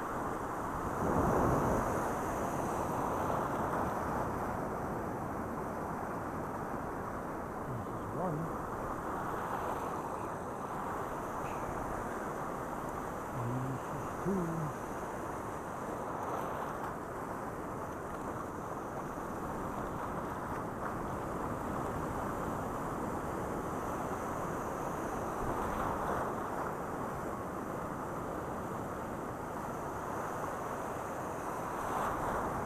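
Wind buffeting a head-mounted camera's microphone over the rush of ocean surf washing in, a steady noisy roar that swells about a second in.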